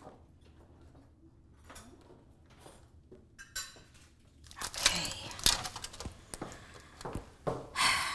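Dishes and kitchen items being handled at a counter: quiet at first, then from about halfway rustling with a few sharp knocks and clinks.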